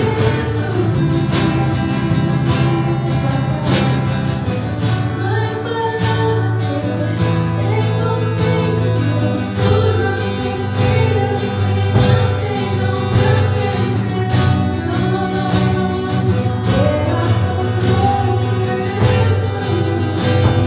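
A live worship band playing a song in Spanish: a woman sings the lead while strumming an acoustic guitar, backed by another guitar and a drum kit keeping a steady beat.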